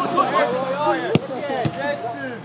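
A football kicked hard once, a single sharp thud a little over a second in, against several players shouting on the pitch.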